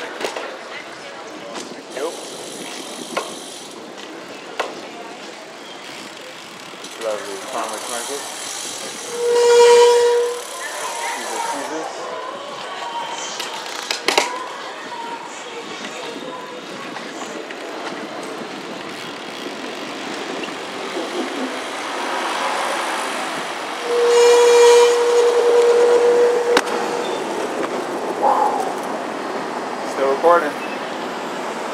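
Road traffic noise with two loud, steady horn-like tones, the first about a second long, the second about two and a half seconds long.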